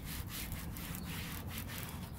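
Applicator pad wiping trim dressing onto a textured black plastic bumper valance: a dry, scratchy rubbing in quick, even back-and-forth strokes.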